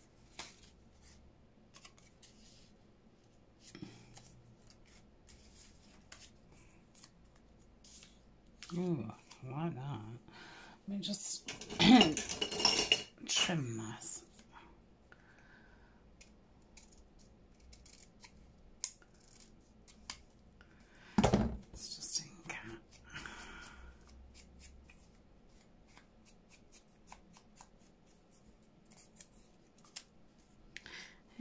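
Scissors snipping paper in a string of short, light snips, with paper being handled and rustled on a wooden table. The rustling is loudest about eleven to fourteen seconds in, and there is one sharp knock about 21 seconds in.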